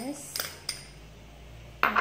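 A metal spoon clinking against a small glass bowl three times, the last clink the sharpest, near the end.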